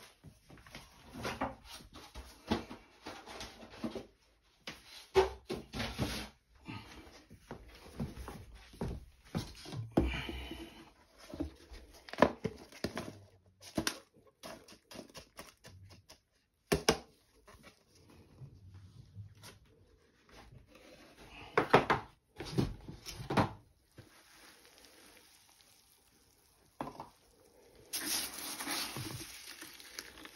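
Plastic plant pots and trays being handled, with irregular clacks, knocks and rustles of potting mix. Near the end comes a denser, steady dry rustle of rice husks being scooped.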